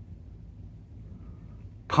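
Quiet pause: room tone with a faint, steady low hum and no distinct event.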